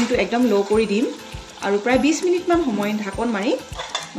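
A spatula stirring and scraping pieces of duck meat sizzling in masala in a cast-iron kadai, with scattered knocks against the pan. A melodic background tune plays over it.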